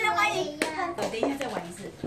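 A few sharp clicks and knocks of plastic building blocks being handled, under children's voices.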